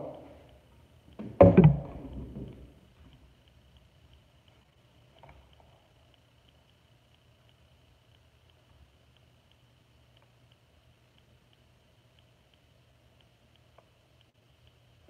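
A cardboard toy box handled by hand: one knock with a short rustle about a second and a half in. Then near silence in a quiet room, with a faint steady hum.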